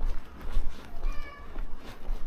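Footsteps of a person walking on a pavement, about two a second, with wind rumbling on the microphone. About a second in comes a short, flat-pitched call lasting about half a second.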